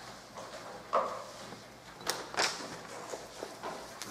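A few short knocks and rustles from handling objects at a meeting table, over quiet room tone; the loudest two come close together about two seconds in.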